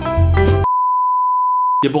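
Outro music with bright plucked notes cuts off about half a second in. A single steady electronic beep follows and lasts just over a second, then a man starts speaking.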